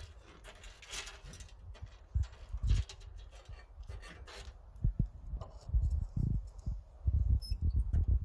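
A piece of wood scraping and knocking against the burning hardwood pellets and metal fire box of a wood-pellet pizza oven as the fire is stoked, in irregular strokes.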